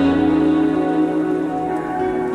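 Bengali lofi music holding a sustained chord in a pause between sung lines, over a steady rain-like patter or crackle layer.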